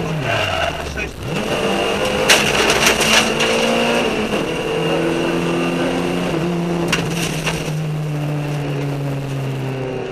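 Opel Astra OPC rally car's four-cylinder engine heard from inside the cabin at racing speed: the revs drop sharply at the start as the driver lifts off, then build again. A few short sharp cracks come about two to three seconds in and again near seven seconds, and the engine then holds steady revs with its pitch easing slowly down.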